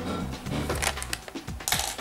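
Background music, with short clattering sounds of small hard objects being handled, the loudest one near the end.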